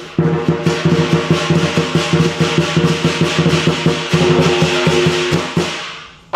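Lion dance percussion: a large drum beaten in fast, dense strokes with crashing cymbals and a ringing gong. It breaks off for an instant at the start, then plays on and dies away near the end.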